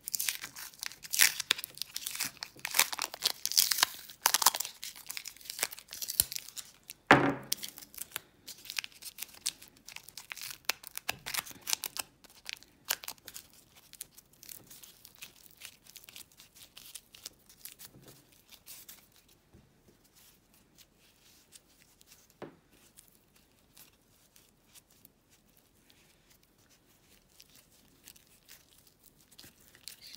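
Paper masking tape being pulled off its roll, torn and crinkled as it is wrapped around the end of a wire: a run of crackly rips, densest in the first half, with one sharp knock about seven seconds in, then fainter handling.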